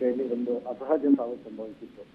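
Speech only: a man reporting in Kannada, his voice thin and narrow as over a phone line.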